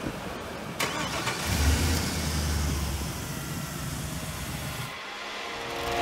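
Pickup truck engine being jump-started: a sharp click about a second in, then the engine cranks and catches, running strongly for a couple of seconds before its sound drops away near the end.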